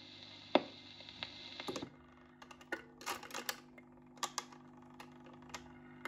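Dansette Major record player at the end of a 45 rpm single: the hiss of the stylus in the run-out groove, with a sharp click about half a second in, stops after about two seconds. Then the autochanger mechanism clicks and clunks as the tone arm lifts and swings back to its rest, over the turntable motor's steady hum.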